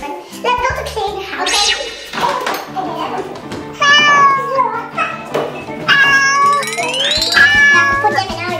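Cat meow sound effects over upbeat background music: one meow about four seconds in, then a longer meow that rises in pitch near the end.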